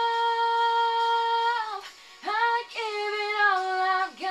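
A young woman singing solo, holding one long steady note for nearly two seconds, breaking off briefly for a breath, then going into the next sung phrase.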